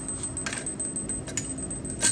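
Two light metallic clinks, about half a second in and again past the middle, as a steel-framed hacksaw is handled and set against a cast-iron bench vise, over a steady low hum.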